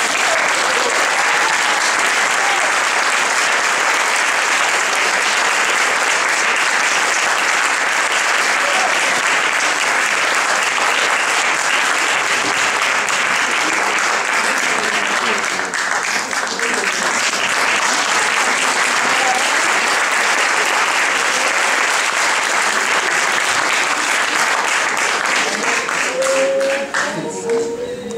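Audience applauding, breaking out all at once and holding steady and dense.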